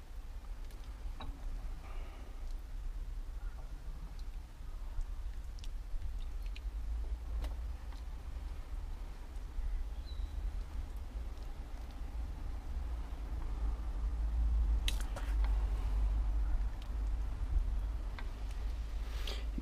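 A wooden spoon stirring goulash in a cast-iron Dutch oven: faint scrapes and a few light clicks, a small cluster of them about fifteen seconds in, over a steady low rumble of wind on the microphone.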